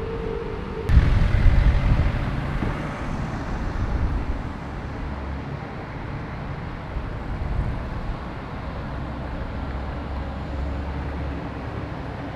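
Bus engines in street traffic: a loud low rumble about a second in that eases off over the next few seconds, then a steady low engine drone with traffic noise.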